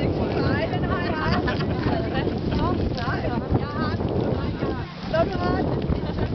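Wind buffeting the microphone in a steady low rumble, with several people's voices calling out indistinctly over it.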